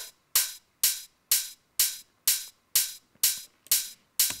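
Rough open hi-hat sample playing on its own in a steady pattern, about two hits a second, each a short bright hiss that fades quickly. Its very low frequencies are cut out and a lot of the mids are left in, to make it sound big and solid.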